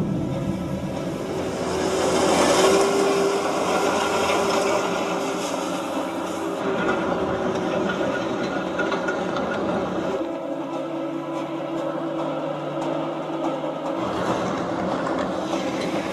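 Film soundtrack with no dialogue: held drone notes of the orchestral score over continuous rumbling vehicle noise and clatter.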